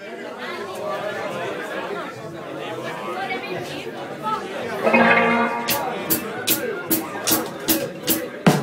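Crowd chatter in a club between songs. About five seconds in, an electric guitar sounds and the drum kit starts a steady high ticking, about four ticks a second, ahead of the band starting the song.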